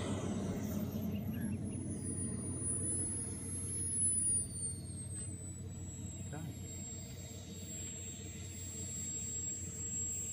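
Small model jet turbine of a Skymaster Avanti XXL running on the ground, heard at a distance: a thin high whine that drops in pitch, lifts briefly, then settles to a steady idle whistle over a low rumble.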